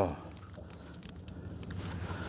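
A Chinese-made spinning reel being cranked to wind in line, running quietly apart from a few light, irregular clicks. It is winding well, as well as a Shimano Sedona.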